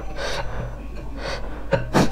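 Close-miked eating sounds: noodles being chewed, with several short, sharp breaths drawn in through the mouth and a sharp click near the end.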